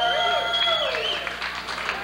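Banquet audience applauding. A long held whoop falls away about a second in, and the clapping carries on after it.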